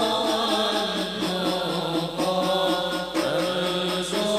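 Group of men chanting an Arabic devotional qasidah together in a slow, held melody, with a short break between phrases a little after three seconds.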